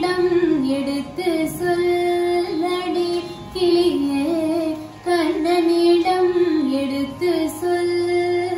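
A woman singing a Carnatic devotional song solo, holding long notes that waver and bend in ornamented turns, in phrases separated by short pauses for breath.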